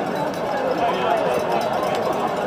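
A television commentator's voice calling the play over steady stadium background noise.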